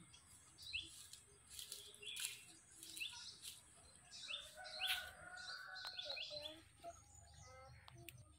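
Birds chirping: short gliding chirps repeated every half second to a second, over a faint steady high-pitched hiss.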